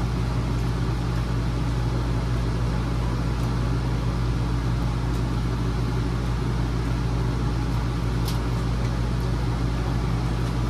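Steady low mechanical hum of a running motor, unchanging throughout. A metal spoon clinks lightly against the steel pot about eight seconds in.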